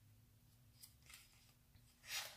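Near silence: room tone, with a couple of faint ticks about halfway through.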